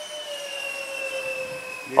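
Electric ducted fan of a radio-controlled MiG-29 model jet whining steadily in flight, its pitch sliding slowly down.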